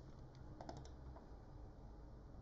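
A few faint, sharp computer clicks from mouse and keyboard use: a quick cluster of three or four about two-thirds of a second in and one more a little later, over a faint low hum.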